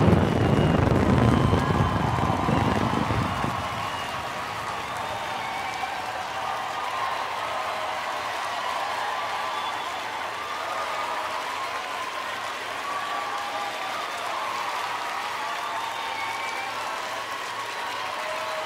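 Fireworks bursting with deep booms for the first three or four seconds, then a crowd cheering and applauding steadily.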